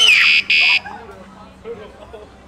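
A loud, high-pitched scream of fright that breaks off and comes back as a second, shorter, harsh burst just under a second in, distorted from overload. Quiet talk follows.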